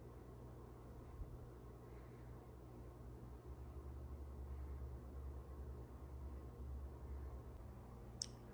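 Quiet room tone with a faint low hum that swells a little in the middle.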